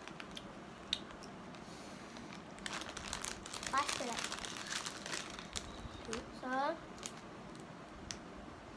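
Plastic Mamee Monster snack packet crinkling as it is handled, in a cluster of crackles through the middle, with a couple of short vocal sounds from the children.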